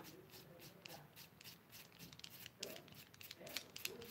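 Very faint rubbing with light scattered ticks: a small foam roller spreading paint over a wooden plaque.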